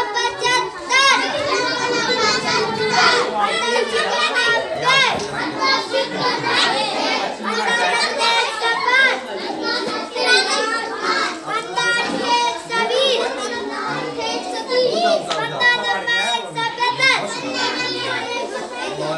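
A group of children reciting multiplication tables aloud in Hindi, several high young voices overlapping in a continuous chant.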